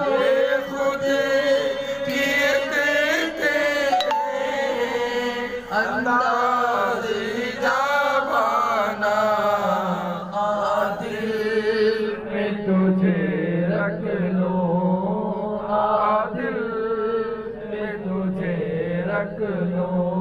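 A man chanting a devotional Sufi zikr into a handheld microphone, in long drawn-out melodic phrases that rise and fall.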